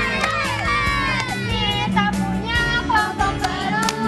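A group of girls chanting and singing a group cheer together, with music underneath.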